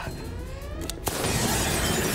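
Spaceship cockpit windscreen shattering, a sound effect. A sharp crack comes about a second in, and the crash of breaking glass runs into a sustained rushing noise, over dramatic music.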